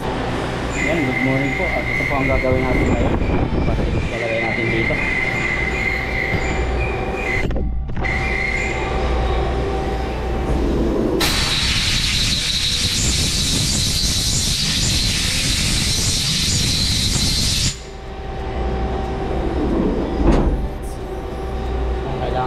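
Compressed-air blow gun hissing loudly for about six seconds as it blows chips and coolant out of a lathe chuck. Factory machinery hums steadily under it throughout.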